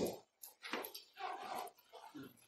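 A pause in a man's speech: his last word trails off at the start, then only a few faint, brief sounds.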